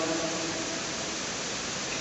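Steady, even hiss of room noise in a pause between spoken sentences, with no distinct event.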